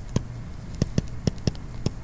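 Stylus tip tapping on a tablet screen while handwriting: a run of sharp, irregular clicks, about three a second.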